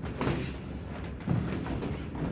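Padded boxing gloves landing during sparring: a thud just after the start and a louder one about a second later.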